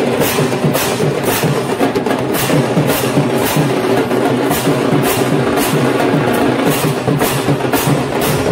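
Large brass hand cymbals (jhanjh) clashed together in a regular beat, about two crashes a second, over steady drumming.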